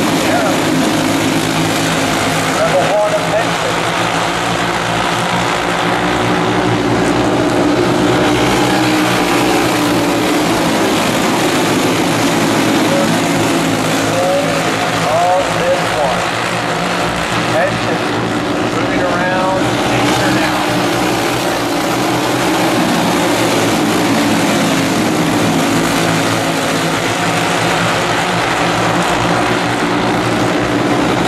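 A field of racing karts running laps together on a dirt oval. Many small single-cylinder engines blend into one dense, steady drone, and now and then a single engine's pitch rises or falls as it passes.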